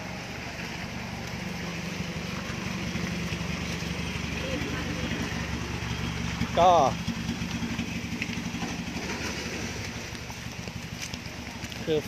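An engine idling with a steady, low, even hum, a little louder in the middle and easing off near the end.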